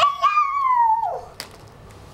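A toddler's high-pitched squeal, held about a second and falling in pitch at the end, followed by a single sharp click.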